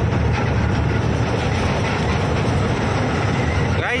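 Steady cab rumble of a Tata truck at highway speed: the diesel engine's low drone mixed with tyre and road noise, heard from inside the cab.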